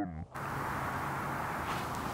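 Steady outdoor background noise, an even hiss with a faint low hum under it, cutting in abruptly about a third of a second in after a short hummed 'mm' ends.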